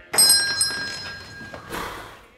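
A door bell rings with a sharp strike, its high metallic tones ringing on and fading, then a second, noisier clatter near the end.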